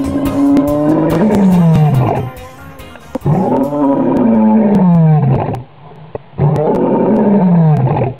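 Lion roaring three times, each call about two seconds long, rising then falling in pitch, with the song's music trailing off underneath over the first few seconds.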